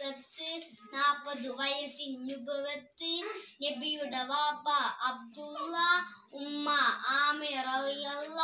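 A young boy singing a Malayalam Islamic devotional song (a song about the Prophet) solo, without accompaniment, in phrases separated by short breaths, with some held notes wavering in ornamented runs.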